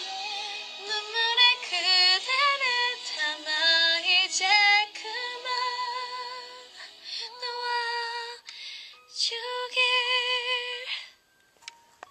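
A woman singing solo, with long held notes and vibrato. Her singing stops about a second before the end.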